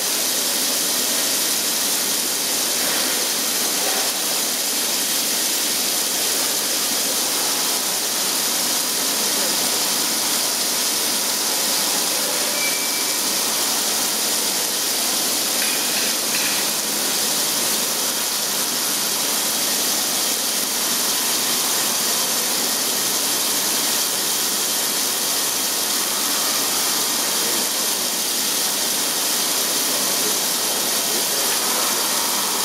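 Parpas CNC milling machine cutting Hastelloy X nickel alloy under flood coolant: a steady, unbroken rushing hiss of coolant spray and cutting, with a faint steady whine underneath.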